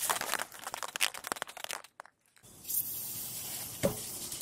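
Aerosol can of motorcycle chain lube rattling in a quick series of clicks as it is shaken, then, after a short pause, spraying in a steady hiss onto the drive chain.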